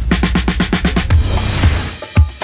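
Intro theme music led by a drum kit, with a fast run of drum hits through the first second before the music carries on.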